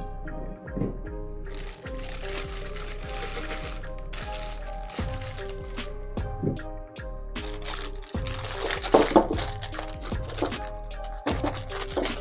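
Background music with soft, steady tones. Over it, a plastic piping bag crinkles and rustles in two stretches as whipped meringue is spooned into it with a spatula.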